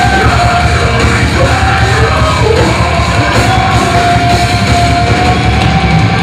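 Metalcore band playing live and loud: distorted guitars, bass and drums, with a shouted, screamed vocal over them and a long note held through the middle.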